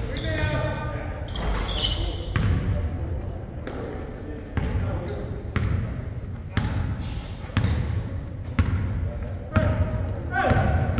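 Basketball being dribbled on a hardwood gym floor, one echoing bounce about every second, under the murmur of players' voices.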